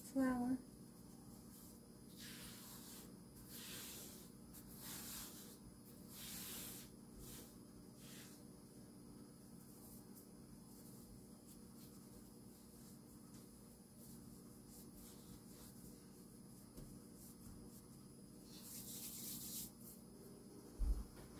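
Hands working sourdough dough and brushing flour across a silicone pastry mat: soft rubbing, brushing swishes, several in quick succession in the first few seconds, then fainter, with one more near the end.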